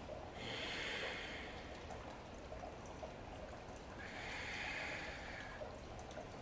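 A woman's slow, deep breathing while she holds a yoga stretch: two long, soft breaths, one near the start and one about four seconds in.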